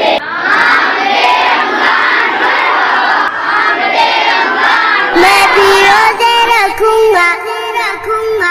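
A large group of schoolchildren chanting together loudly. About five seconds in, a sung melody in a child's voice takes over, moving in long held notes.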